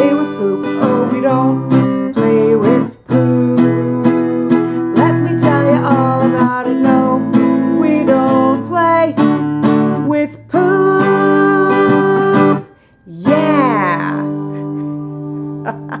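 A woman sings to a strummed acoustic guitar. Near the end comes a long held note and a brief break, then a last note that slides down over a chord left to ring out, and a short laugh.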